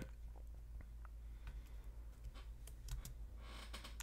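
Quiet room tone with a steady low hum and a few faint, scattered clicks, and a soft hiss of breath-like noise shortly before the end.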